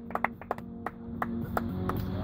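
Background music at a quiet stretch, with faint held notes and a string of sharp percussive clicks. The music builds up again near the end.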